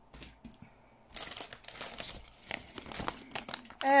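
Clear plastic packaging bag crinkling as it is picked up and handled, beginning about a second in.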